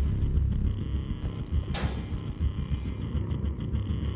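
Low rumbling drone of a suspense film score, with a brief whoosh a little under two seconds in.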